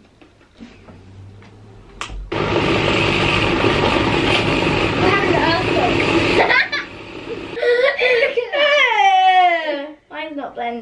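SilverCrest jug blender running steadily for about four seconds as it blends a chocolate milkshake, then stopping.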